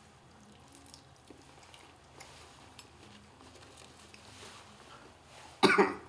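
A few faint clicks of food and plates being handled, then a single sudden cough about five and a half seconds in, from the heat of a Trinidad Scorpion pepper hot sauce.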